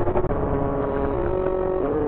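Animated-film soundtrack audio with a dim, muffled top end: a held note that dips slightly a little past halfway and steps up near the end, over a dense low rumble.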